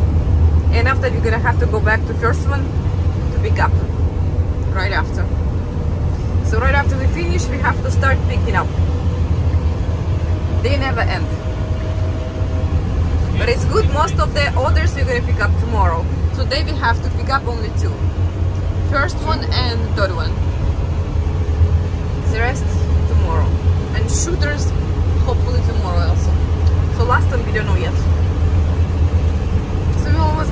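Steady low engine and road drone inside a moving box truck's cab at highway speed, with a person's voice talking on and off over it.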